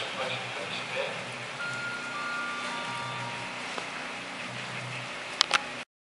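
Railway station public-address chime: three steady notes that start one after another, each lower than the last, and overlap, following the last words of a train announcement over the loudspeaker. Two sharp clicks come near the end, just before the sound cuts off.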